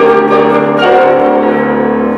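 Flute and grand piano playing classical music together, held notes over ringing piano chords that change about twice.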